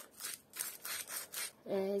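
Salt being shaken from a shaker over a plate of grated raw potatoes, a quick run of about five short hissy shakes.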